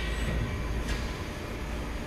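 Rebar straightening and bending machine running slowly, its feed rollers pushing the steel wire forward through the straightening wheels into the bending head. It makes a steady low mechanical rumble.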